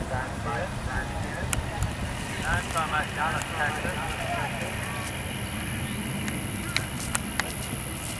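Faint distant speech over steady outdoor background noise, with a thin, steady high-pitched tone.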